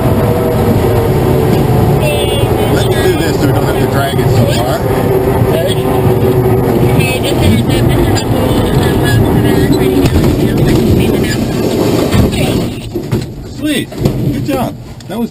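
A glider's main wheel rolling along the runway after landing: a loud, steady rumble with the airframe rattling. It dies away about twelve and a half seconds in as the glider rolls to a stop.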